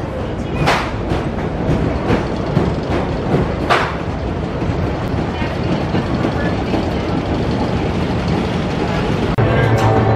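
Wooden roller coaster train running on the track, a steady rumble with sharp clacks about a second in and again near four seconds.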